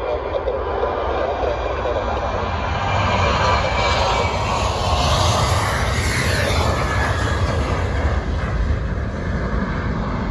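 Twin CFM56-7B turbofans of a Ryanair Boeing 737-800 at take-off power as the jet rolls and lifts off. The engine noise swells to its loudest about five to six seconds in, with a high hiss at the peak, then eases a little.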